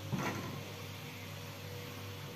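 Quiet room tone: a steady low hum, with one brief soft sound just after the start.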